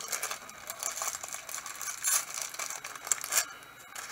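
A small plastic zip bag holding a set of polyhedral dice being handled: the plastic crinkles and the dice click against each other, irregularly, with a couple of louder rustles about two and three seconds in.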